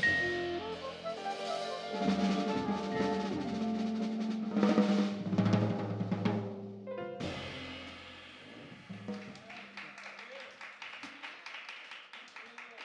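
Live jazz quintet of vibraphone, soprano saxophone, piano, upright bass and drums playing the closing bars of a tune, building to a drum roll and cymbal crashes. The band cuts off together about seven seconds in, leaving a low note ringing briefly, then scattered audience clapping.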